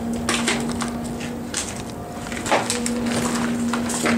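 Crunching and snapping of debris underfoot, a handful of separate sharp cracks and crunches, over a steady low hum.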